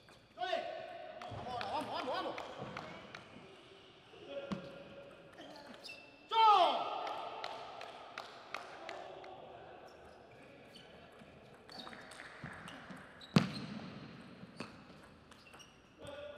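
Table tennis ball clicking off bats and table during play, with two loud shouts from a player as he wins the points, the loudest about six seconds in as the game is won. A single sharp knock about thirteen seconds in.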